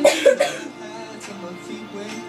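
Background music playing, with a loud cough in two quick bursts in the first half second.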